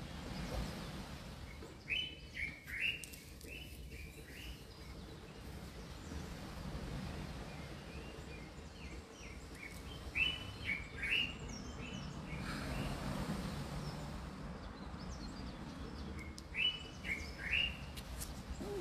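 A bird singing a short phrase of several quick high notes, repeated three times with pauses of several seconds, over a steady low background hum.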